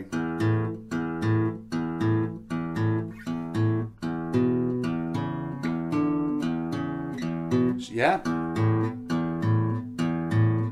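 Steel-string acoustic guitar playing a slow, steady blues rhythm pattern on the low strings, evenly spaced picked strokes at about two to three a second, with a short spoken "yeah" about eight seconds in.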